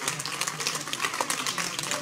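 Group of people applauding: many hands clapping at once in a steady, dense patter.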